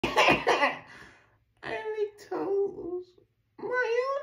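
A young man's voice: a few quick coughs, then drawn-out, strained vocal sounds with a short break in the middle.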